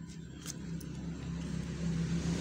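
A motor vehicle engine running nearby, growing gradually louder as it approaches, with a couple of small clicks early in.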